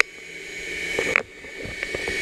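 Steady background noise with a faint, thin high tone running through it; the level drops off suddenly a little over a second in and then builds again.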